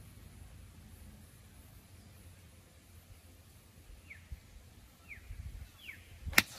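A bird calling three times near the end, each a short whistle falling in pitch, about a second apart, over a faint low rumble of outdoor air.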